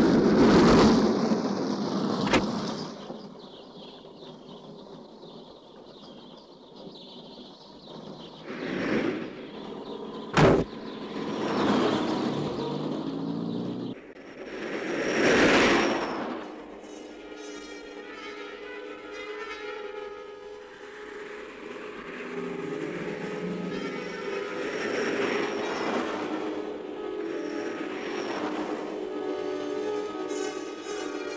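Film soundtrack: road vehicles passing with swelling rushes of noise, one near the start and more about halfway through, and a sharp knock about ten seconds in. Background music comes in under them from about halfway and carries on to the end.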